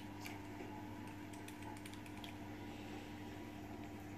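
Faint light clicks and ticks from a small plastic reagent dropper bottle being handled, over a steady low hum.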